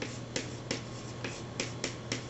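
Chalk writing on a chalkboard: a string of sharp clicks and taps as each stroke of a word strikes the board, about seven in two seconds.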